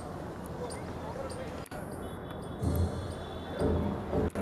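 Steady outdoor stadium background noise, broken a little past halfway and again near the end by two loud, muffled low thumps.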